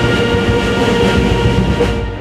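Brass band holding a long sustained chord over a low rumble, stopping near the end.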